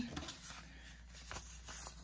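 Faint rustling of paper bills being handled, with a few light taps.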